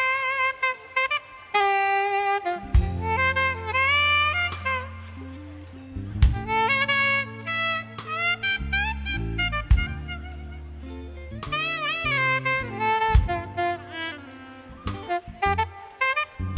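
Live saxophone solo in a jazz-funk band: quick runs and bent, sliding notes over held bass notes and drum hits.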